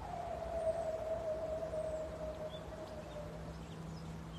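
A soft, sustained single tone that drifts slowly lower in pitch and fades out after about three and a half seconds, over a low steady hum that sets in partway through.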